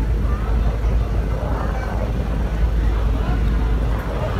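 Steady low rumble aboard a moving river ferry: engine drone mixed with wind on the microphone, with faint voices in the background.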